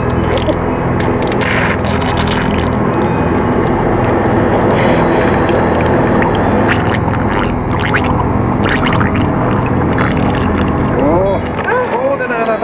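Dark ambient noise passage from a black metal album recording: a dense, steady droning rumble with no beat. Warbling, sliding tones come in about a second before the end.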